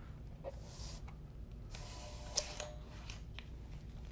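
Faint handling sounds from a resistance microdrill unit being picked up and moved: short rustles and a few light clicks, busiest about two seconds in, with one sharper click.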